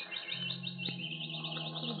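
Small caged birds twittering in fast, continuous high chirps, a radio-drama sound effect, over a low steady hum from the old broadcast recording.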